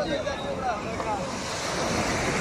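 Sea surf breaking and washing up a sandy beach, the wash swelling louder near the end.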